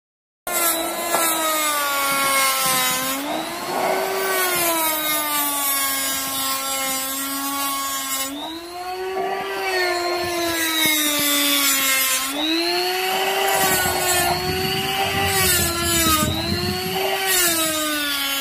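Handheld die grinder with a small mounted point grinding metal inside a bore. It gives a high whine that sags in pitch as it is pressed into the work and rises again when eased off, several times over, with a grinding hiss.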